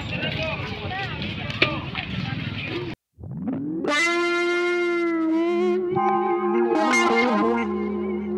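Outdoor crowd chatter for about three seconds, then a sudden cut to silence and edited-in background music starts, opening with a note sliding up into a long held, wavering note.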